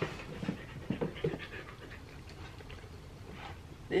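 A Siberian husky panting, with quick irregular breaths that are louder in the first second and a half and then softer.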